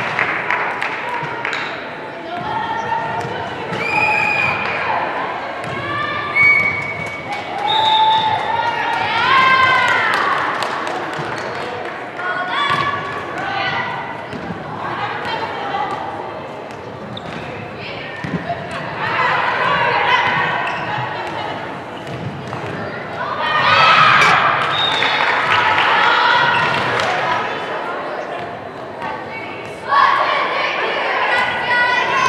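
A volleyball bouncing on a hardwood gym floor and being struck, with players and spectators calling out and cheering in a large, echoing hall.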